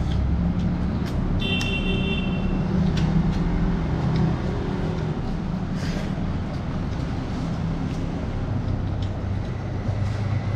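Steady low engine rumble, like a running vehicle or passing road traffic, with scattered light clicks and a short high beep about one and a half seconds in.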